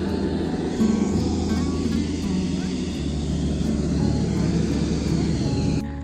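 Hot air balloon's propane burner firing overhead, a steady rushing noise, with faint music underneath; it stops abruptly near the end.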